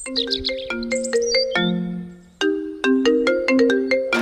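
Mobile phone ringtone playing a melodic tune of clear, separate notes, with a few high chirps at the start and a brief gap about halfway through.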